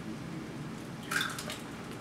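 A raw egg opened by hand over a plastic mixing bowl, its contents dropping in with one short wet splash about a second in.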